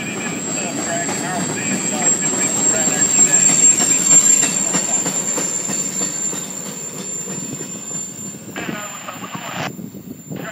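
Freight train's covered hopper and tank cars rolling past on steel wheels, with a steady high-pitched whine over the rumble of the rail. The sound is loudest about four seconds in and eases as the last cars go by.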